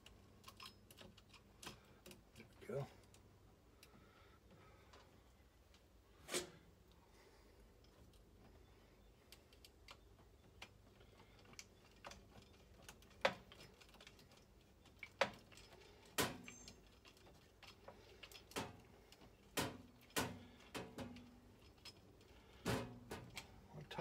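Irregular sharp clicks and light taps of a screwdriver and a circuit breaker against a metal breaker panel as the breaker is seated and its wire terminal screws are worked.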